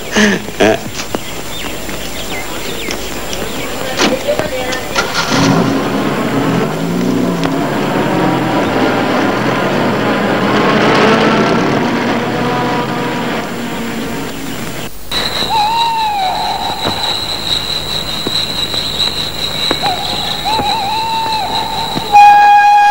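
Film soundtrack: a car's engine and road noise swell to a peak about halfway through and fade. After a sudden cut, a thin wavering flute-like melody plays over a steady high tone.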